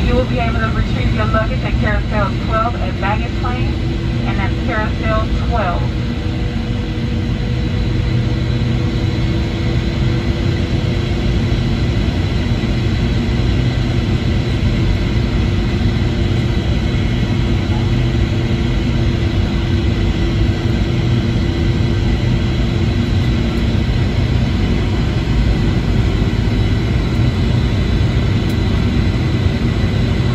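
Boeing 757-200 cabin noise while taxiing: a steady jet engine roar at low power with several steady whining tones, heard from a seat over the wing. A voice speaks briefly in the first few seconds.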